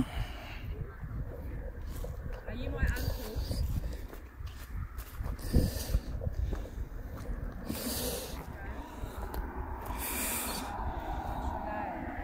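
Handheld walking noise: a low rumble of movement on the microphone, with a breathy hiss about every two and a half seconds. Faint voices come in toward the end.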